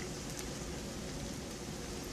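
Steady sizzling of food frying on a hot griddle and pans.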